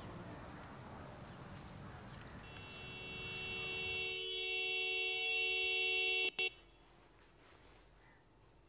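Car horn held down by a driver slumped over the steering wheel, sounding as one steady two-note tone. It swells in over a couple of seconds, cuts off suddenly about six seconds in, sounds again for a split second, then stops.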